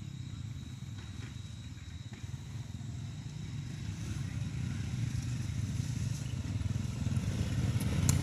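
Several small motorbikes ride in, their engines running at low speed and growing steadily louder as they approach.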